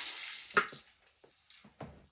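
Rain stick tipped, its falling pellets making a steady, water-like hiss that fades out about half a second in, followed by a few soft knocks.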